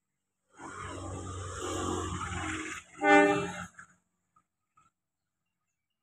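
Diesel-electric locomotive (CC 201 class) running, a low engine rumble under a steady high hiss, then one short horn blast about three seconds in, the loudest sound, before the sound cuts off abruptly.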